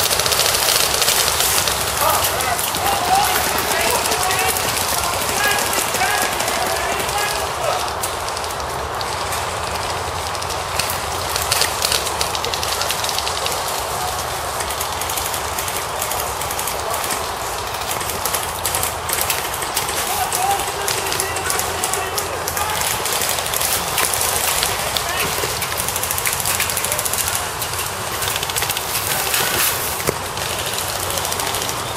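Airsoft skirmish: a continuous rattle of rapid clicks from airsoft guns firing, with players shouting, mostly in the first few seconds and again about two-thirds of the way through.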